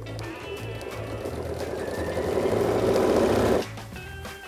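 Home sewing machine with a walking foot stitching a straight line through a layered quilt sandwich, getting louder as it runs. It stops abruptly near the end, at the point where the quilt is pivoted.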